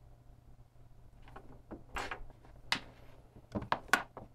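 Handling sounds as a USB-C cable is pulled out of a small trigger board and the cable and board are set down on a table: several short clicks and light knocks, the loudest near the end.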